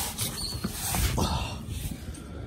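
Irregular rustling and scuffing as the phone camera is handled and swung around under the car, with a few short noisy bursts.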